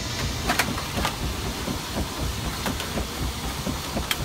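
Dutch street organ's drive mechanism, its pulley wheel and round belts, turning without music: a steady mechanical noise with faint, irregular clicks about every half second to a second.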